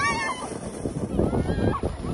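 A high-pitched squeal of a person's voice just at the start, then plastic sleds sliding and scraping over packed snow.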